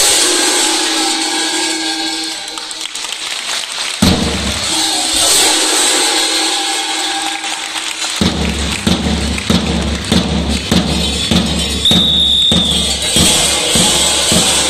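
Kukeri costume bells ringing and clanging together with large Bulgarian tapan drums; about eight seconds in the drums settle into a steady, regular beat. A brief high steady tone sounds near the end.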